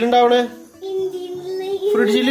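A young girl singing in a sing-song voice: a short phrase, then one long held note.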